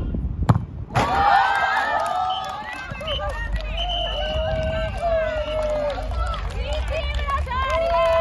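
A single sharp thump of a football being kicked about half a second in, then a group of people breaking into excited shouts and long high-pitched cheers as the winning penalty goes in.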